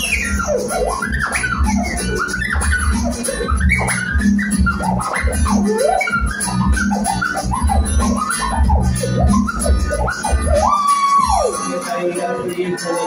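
Live band music heard from within the crowd: a pulsing bass and drum groove under a whistle-like lead line that swoops up and down in pitch, ending with a held note that slides down near the end.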